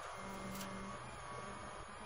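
Rally car's engine running at steady revs with gravel road noise, heard from inside the cabin.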